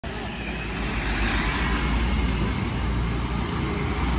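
Road traffic with motorcycles and minibuses passing close by: a steady, continuous mix of engine and tyre noise with a heavy low rumble.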